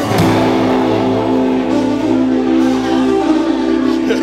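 Guitar-led music with a chord held and ringing out.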